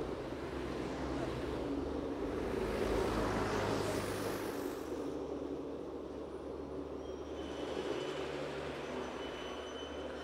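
Street traffic: a steady low engine hum, with a vehicle passing that swells and fades about three to four seconds in.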